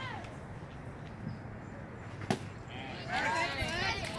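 A single sharp pop about two seconds in: a pitched baseball smacking into the catcher's mitt. Voices call out right after it.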